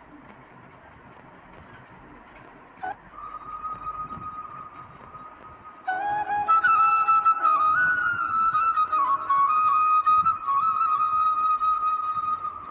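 Background music with a flute melody: a faint held flute note comes in about three seconds in, and the melody grows louder from about six seconds in.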